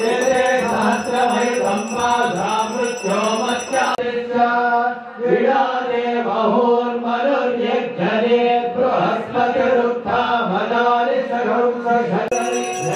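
Sanskrit Vedic mantras to Shiva (Rudra) chanted in a steady, melodic recitation. A high, steady ringing sounds over the chanting for about the first four seconds, then stops.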